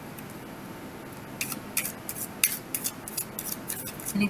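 A deck of tarot cards being shuffled by hand: a quick irregular run of crisp card snaps, starting about a second and a half in.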